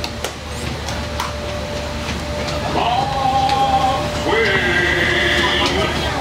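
A man's recorded voice over a riverboat's loudspeaker calling out a long drawn-out "Mark twain!", the old leadsman's depth call, as two held syllables in the second half, over a steady hum.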